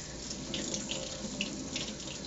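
Kitchen faucet running into a stainless steel sink, the stream splashing over hands and a fish skin being rinsed under it, with a few brief brighter splashes.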